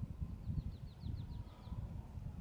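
A small bird singing a quick trill of about ten short, falling chirps, over low rumbling and bumps from a clip-on microphone being handled.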